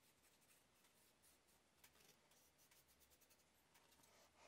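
Near silence, with faint scratchy strokes of a paintbrush working along the edges of a thin MDF board.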